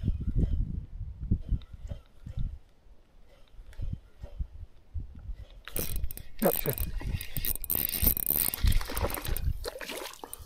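Daiwa TD Black MQ 2000S spinning reel being cranked from about halfway through, its gears and rotor whirring steadily as a hooked redfin is wound in against the line.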